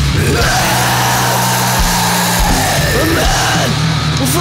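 Death metal: distorted guitars and drums playing steady low chords, with a high line sliding up and down in pitch above them.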